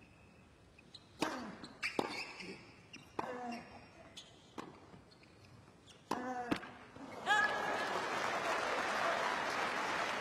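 A tennis rally on a hard court: a serve and a string of racket strikes on the ball, some with a player's grunt, between about one and six and a half seconds in. About seven seconds in the point ends and the crowd breaks into steady applause and cheering.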